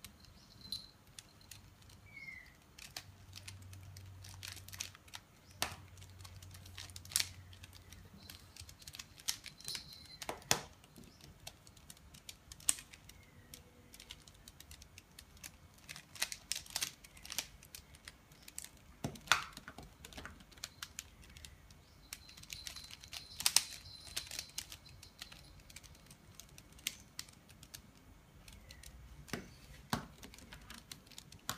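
A mirror cube (3x3 mirror-blocks puzzle) being turned by hand: an irregular run of plastic clicks and clacks as its layers rotate, with a few sharper snaps among softer ones.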